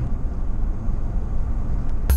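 Steady low rumble of a car driving along a road, heard from inside the cabin.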